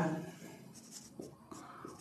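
Marker pen writing on a whiteboard: faint strokes of the tip across the board, with a small tick about a second in.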